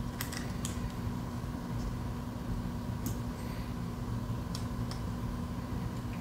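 Steady low hum of room tone with a few faint, light clicks from handling a small plastic key fob and precision screwdriver.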